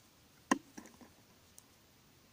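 Metal knitting needles clicking against each other while knitting a row of plain stitches: one sharp click about half a second in, then a few fainter ticks.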